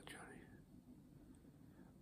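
Near silence: quiet room tone, with a faint trailing murmur of the voice in the first half-second.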